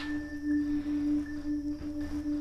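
Background music: a sustained, singing-bowl-like drone, with a steady low tone that swells and fades slightly and a fainter high ringing tone above it.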